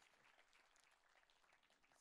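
Near silence with very faint audience applause, a thin patter of many claps.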